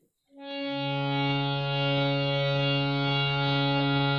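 Harmonium reeds sounding one steady held note, fading in about half a second in after a moment of silence.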